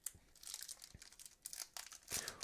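Foil wrapper of a Yu-Gi-Oh! booster pack crinkling as it is torn open: a run of faint, irregular crackles.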